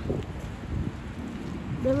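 Steady outdoor background noise, mostly low and rumbling, with a few faint ticks; a woman's voice starts near the end.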